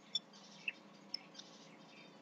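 Four faint, short, high chirps spaced apart, like a small bird calling.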